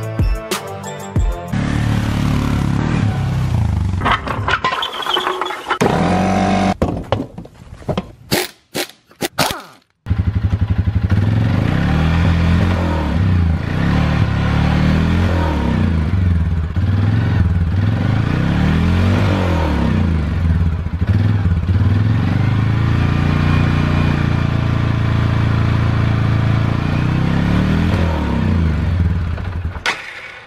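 Suzuki KingQuad ATV's single-cylinder engine revved over and over with no load, its wheels off and hubs on stands, the pitch climbing and falling every couple of seconds. Before the engine comes in, about a third of the way through, there is music and a short run of clicks.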